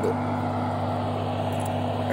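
Car engine idling with a steady low rumble and hum as the vehicle creeps forward at low speed.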